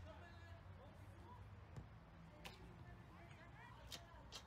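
Mostly quiet, with a few faint, sharp knocks about halfway through and near the end: footballs being kicked at goal. Faint distant voices underneath.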